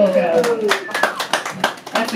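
Hand clapping in a small room, evenly spaced at about six claps a second, after a polka ends. Over it, a voice slides down in pitch and trails off within the first second.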